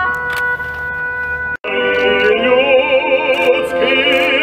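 Orchestral music: sustained held notes break off abruptly about a second and a half in. The orchestra then resumes with an operatic voice singing with a wide vibrato.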